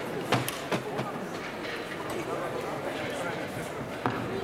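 Indistinct chatter of many voices in an indoor arena, with three sharp clicks within the first second.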